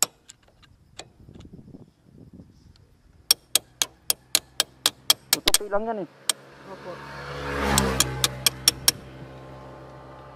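Sharp metallic clicks from hand tools being worked on a motorcycle's rear wheel, about four a second, in two runs. Between the runs a passing vehicle's engine swells and fades.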